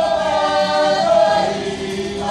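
Māori kapa haka group of women and men singing a waiata in unison, holding one long note that tails off about a second and a half in.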